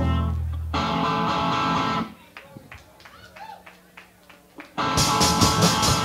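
Live punk rock band: electric guitar chords struck and left ringing, then a roughly three-second lull with only faint noise. About five seconds in, the full band comes back in with steady drum hits and loud guitar.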